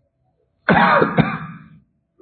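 A man clears his throat once, a loud, rough voiced burst of about a second beginning about two-thirds of a second in, with a sharp catch partway through.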